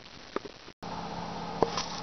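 Quiet room noise with a few faint, short clicks, broken by a brief dropout; after it a steady low hum runs under the room noise. No engine is running.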